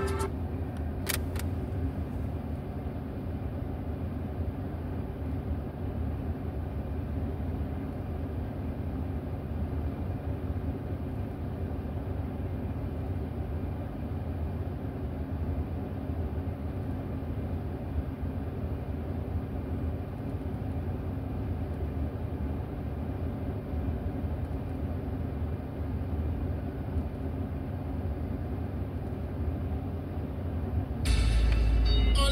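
Car engine idling, heard inside the cabin of the stationary car as a steady low hum, with a single sharp click about a second in.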